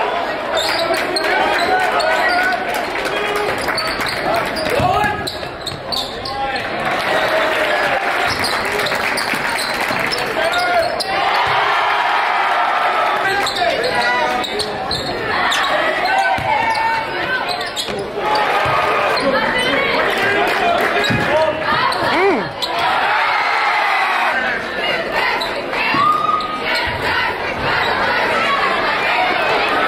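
Live game sound of a basketball game in a gymnasium: a basketball bouncing on the hardwood court in short knocks over a steady din of crowd voices and shouts.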